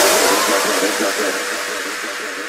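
Drum and bass track's outro: the drums and bass cut out, leaving a hissing synth wash with a faint held tone that fades steadily.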